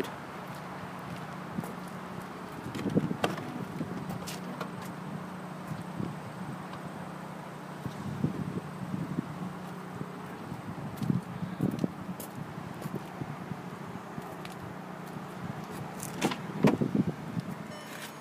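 A steady low hum with scattered knocks and rustles from movement around a parked SUV, the strongest knock near the end.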